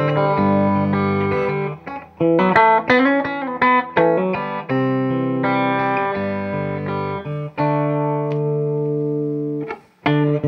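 1963 Gibson SG electric guitar with Lindy Fralin pickups, fingerpicked through an amplifier, with ringing single notes and chords. A few notes waver in pitch about three seconds in.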